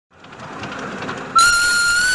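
Miniature train running along the track, its rumble and clicking growing louder, then a train whistle sounds a long, steady note suddenly about one and a half seconds in, becoming the loudest sound.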